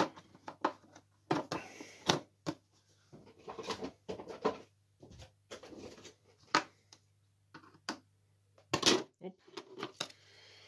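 Plastic bottom cover of a multicooker being twisted loose and lifted off its housing: irregular plastic clicks, knocks and short scrapes, with hands rubbing on the plastic.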